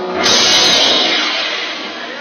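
Loud rock music with guitar and drums, a bright noisy wash that slowly fades as the song ends.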